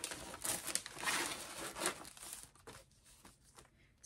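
Packaging sleeve of a cross stitch kit crinkling and rustling as it is handled and the printed canvas is pulled out. The rustling is busiest in the first two seconds and dies down to faint handling near the end.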